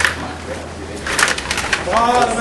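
Sharp plastic clicks and knocks from a Stiga rod table hockey game in play: rods and players striking the puck, with a quick cluster of knocks in the second half. A low steady hum runs underneath, and a voice calls out right at the end.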